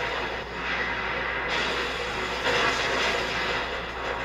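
Anime battle-scene sound effects: a noisy, rumbling rush as an airship is pelted with hurled debris, swelling louder about one and a half seconds in and again about a second later.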